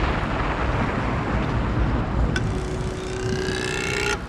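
Horror-film sound effects: a steady rumble, joined a little past halfway by a steady hum and a rising whine that stop abruptly at the end.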